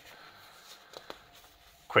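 A quiet pause filled with faint handling sounds from a sheet of lined paper held in the hands, a few soft ticks about halfway through; a man's voice starts right at the end.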